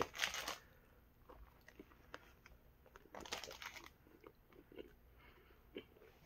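Biting into a pork belly banh mi and chewing it, faint. There are two short crunchy bursts, one right at the start and one about three seconds in, with soft chewing clicks in between and after.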